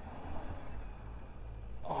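Faint, steady low rumble of a distant minibus engine labouring up a steep dirt hill.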